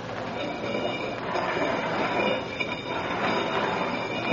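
Steady rumbling, rushing noise with faint high squealing tones: a train-like sound effect in an old radio drama recording.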